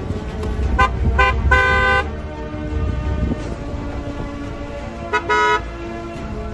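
Car horns honking as a line of cars drives slowly past: two short toots about a second in, then a longer one of about half a second, and two more toots near the end, the second of them longer. A low rumble of passing cars runs beneath.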